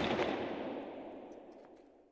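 Dying tail of an impact sound effect on an animated end-title card: a reverberant, noisy wash from a sharp hit just before, fading away over about two seconds.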